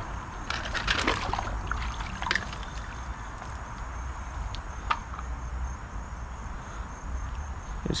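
Rustling and handling noise with a few sharp clicks over a steady low rumble, and a faint pulsing insect trill, typical of crickets, high up.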